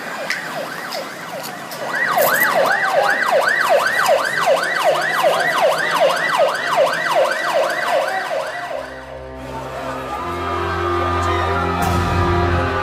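Ambulance siren yelping fast, a rapid falling sweep repeated about two and a half times a second, starting about two seconds in and cutting off after about eight seconds. Sombre music follows.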